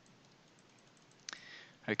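Faint room hiss, then a single sharp computer click about a second and a quarter in, followed by a short hiss. A man's voice begins right at the end.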